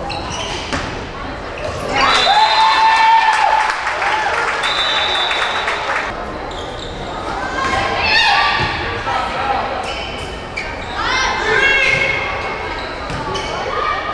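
Indoor volleyball rally: the ball being struck and hitting the hardwood floor in sharp knocks, with players' and spectators' shouts ringing through a large gymnasium. The calls swell about two seconds in, and again near eight and eleven seconds.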